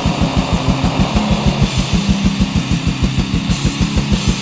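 Black/death metal recording: a distorted guitar riff over rapid, evenly spaced double-bass kick drums and a continuous cymbal wash, with no vocals.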